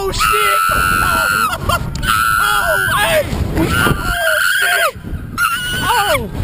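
A woman screaming on a slingshot thrill ride: about four long, high-pitched screams, each held for roughly a second, with wind rumbling on the microphone underneath.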